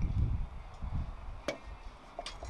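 Low handling rumble as the emptied crucible is lifted away from the moulds in long tongs. About one and a half seconds in comes a single sharp metallic clink as the crucible is set down on the concrete floor.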